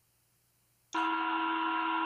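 Near silence, then about a second in a participant's microphone cuts in with a steady electrical hum of several constant tones: her audio line has just been unmuted.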